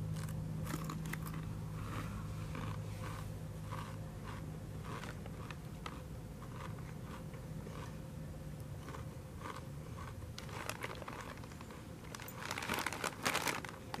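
Corn chips (Fritos) being bitten and chewed, a run of short crisp crunches, with the foil chip bag crinkling in a louder cluster near the end. A steady low hum runs underneath.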